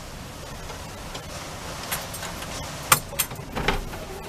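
A few sharp metal clicks and clanks, the loudest about three seconds in, as tie-down hooks and straps are worked at the frame of a power wheelchair on a van floor.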